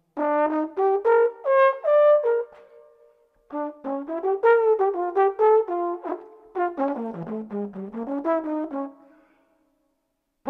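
Unaccompanied trombone playing an improvised jazz solo line of short, quick notes in two phrases, with a pause about two and a half seconds in. The second, longer phrase dips low and climbs back up before it stops.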